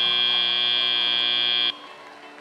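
FIRST Robotics Competition field's end-of-match buzzer: one steady, loud electronic tone signalling that the match time has run out, cutting off suddenly near the end.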